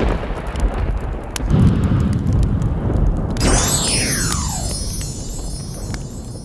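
Logo sting for the show's closing ident: a deep rumbling swell. About three and a half seconds in comes a sudden hit, followed by a falling sweep that dies away.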